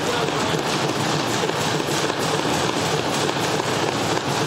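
Legislative chamber din: many members thumping their desks and clapping, with voices mixed in. It is a steady, dense wall of noise, louder than the speech around it.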